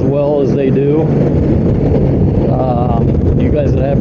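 Honda GL1800 Gold Wing's flat-six engine running at a steady cruise, a steady low drone mixed with wind noise on the microphone. A man's voice speaks over it in the first second and again later.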